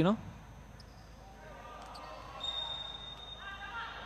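Faint court sounds of an indoor futsal match: the ball bouncing on the court and distant players' voices in the hall. A short, steady high whistle sounds about two and a half seconds in, the referee signalling the restart.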